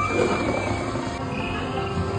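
Theme-park ride soundtrack: ambient music with jungle animal calls, including a short growl from a creature effect near the start.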